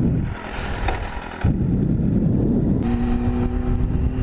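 Yamaha R1 inline-four sport bike pulling away and accelerating, its engine rumble mixed with wind rushing over the microphone, which gets louder about a second and a half in. Near the end the engine settles into a steady note.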